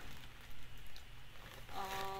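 Soft rustling and handling noise from the kit and papers being moved, then a woman's brief "uh" near the end.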